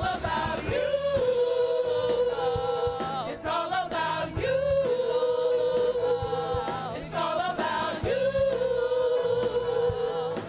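Gospel choir of men and women singing into handheld microphones, holding three long notes together, each for about two seconds.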